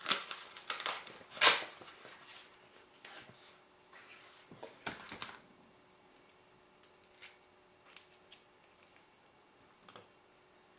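Small hand tools clattering and clicking as someone rummages for a small screwdriver. The loudest clatter comes about a second and a half in, a second burst follows around five seconds, and then a few faint, isolated clicks.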